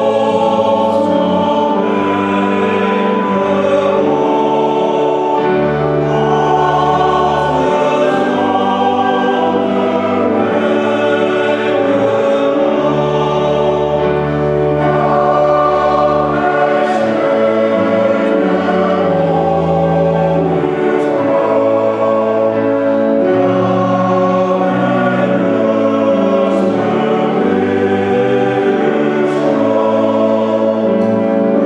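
Men's choir singing a hymn in several-part harmony, with organ accompaniment holding sustained low notes under the voices.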